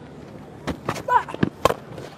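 A few sharp knocks, the loudest about three-quarters of the way through, which is the cricket bat striking the ball. A short call with a bending pitch comes about a second in.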